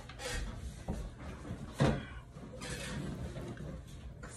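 Handling noises and rustling as objects are moved about, with one sharp knock just under two seconds in.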